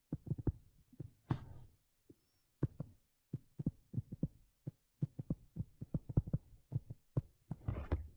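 Stylus tapping on a tablet screen while handwriting, an irregular run of short taps, several a second.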